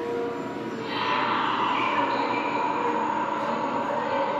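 Electronic sci-fi soundtrack of a black-light UFO attraction: held drone tones under a hiss, with a rushing whoosh swelling in about a second in and holding steady.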